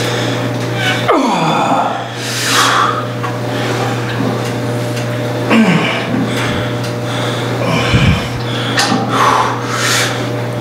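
A man breathing hard through a set on a leg press, with short forceful exhales and strained sounds recurring every few seconds as he works the sled, over a steady low hum.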